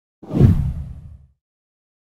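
A single whoosh sound effect, heavy in the low end, that swells quickly about a quarter second in and fades away within about a second.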